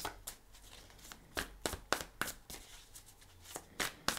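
A deck of cards being shuffled by hand: a scatter of irregular card flicks and snaps, a few sharper ones around the middle and just before the end.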